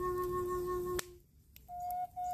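Coffee-wood Native American walking-stick flute in F# holding its low note, which stops with a sharp click about a second in. After a short breath pause, a note about an octave higher begins near the end.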